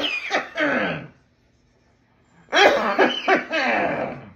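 A person coughing in two bouts: the first dies away about a second in, the second starts about two and a half seconds in and runs on past the end.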